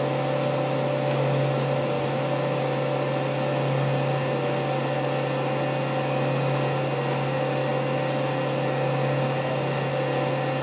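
Tormach 1100MX CNC mill running steadily while it machines a small plate under flood coolant: a held spindle hum with several steady tones over the hiss of coolant spray.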